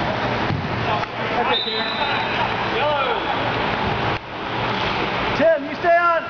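Distant players' shouts and calls across an indoor soccer pitch over a steady rushing background noise, with a louder shout near the end.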